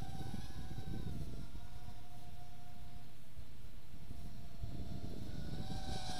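Walkera Rodeo 110 mini FPV racing quadcopter flying overhead: its small brushless motors and tri-blade props give a steady high whine that dips slightly in pitch about a second in and rises a little near the end, over a low rumble.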